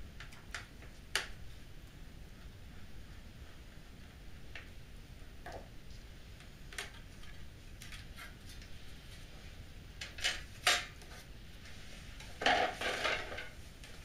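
Scattered light metallic clicks and taps from a screwdriver and the loose screws as the sheet-metal RFI shield of an Acer Revo RL80 mini PC is unscrewed and lifted off. Near the end comes a short rattling metal clatter, the loudest sound, as the shield is set down.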